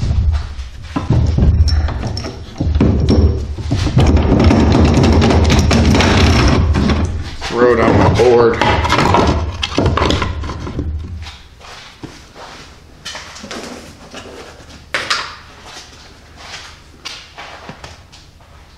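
Wood lathe running with a mesquite box blank, loud friction of hand or tool against the spinning wood for about ten seconds. The motor hum then dies away and the lathe stops, leaving only a few light knocks.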